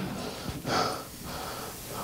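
A man's sharp intake of breath into a handheld microphone, a short rushing inhale about half a second in, over faint room noise.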